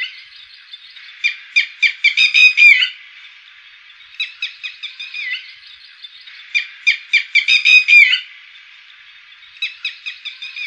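Red-wattled lapwing calling: four bouts of loud, sharp, repeated notes, the longer bouts quickening into a rapid run that ends on a falling note.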